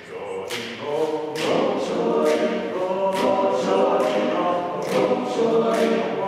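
Men's a cappella group singing a spiritual in close harmony, the sustained chords swelling from about a second in, with sharp crisp accents about twice a second.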